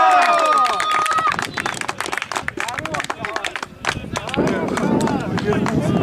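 A man's long, high shout as a goal is scored in an amateur football match, held for about a second, followed by a patter of sharp clicks and then several men shouting together in celebration.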